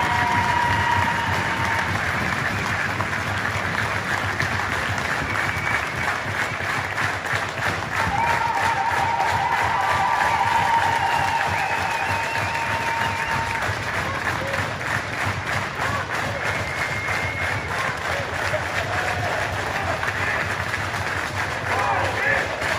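Long, steady applause from the players and crowd.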